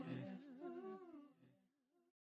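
Faint wordless vocal with a wavering pitch and no beat under it, dying away over about the first second at the very end of a song.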